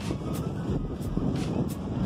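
Wind rumbling on the microphone outdoors, with faint distant voices.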